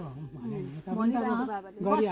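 People talking: only speech is heard, with no other sound standing out.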